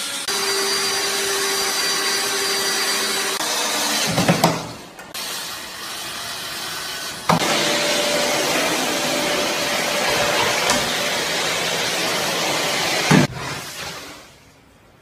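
Vacuum cleaner running, a steady rushing hiss with a faint whistle in the first few seconds, broken briefly about four seconds in. A few knocks are heard over it.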